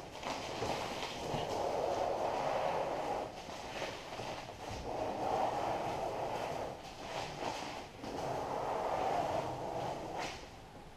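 Premask transfer tape being peeled off vinyl lettering on an acrylic sign face: a rasping, crackling rip that comes in three long pulls, about three seconds, then a second and a half, then two seconds, with short pauses between.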